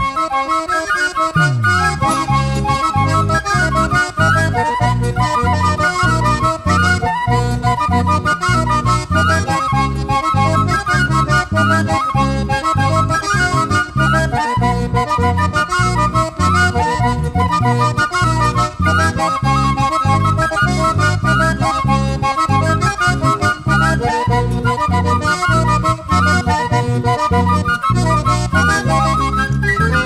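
Instrumental Andean carnival music. Strummed guitars play under a reedy lead melody, over a steady, driving bass beat.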